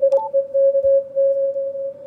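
Morse code (CW) tone from the Yaesu FTdx5000MP's receiver audio: a weak summits-on-the-air station copied through very narrow filtering, sounding as one steady mid-pitched note keyed in long dashes with short gaps. A short, higher beep from the radio sounds just after the start as a front-panel button is pressed.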